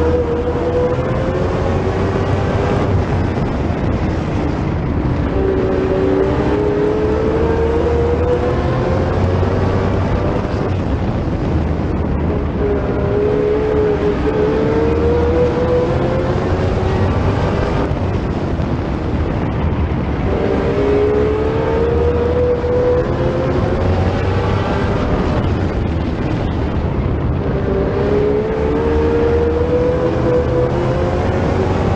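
Sportsman stock car racing engine at full race pace, heard onboard. Its pitch climbs steadily down each straightaway and drops back into each turn, about every seven to eight seconds, over constant road and wind noise.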